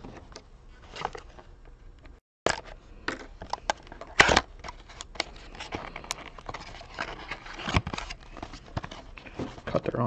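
Hands handling and opening a cardboard trading-card box: crinkling, tearing and scraping of the packaging, with many small clicks and one sharper, louder one about four seconds in. The sound cuts out completely for a moment just after two seconds.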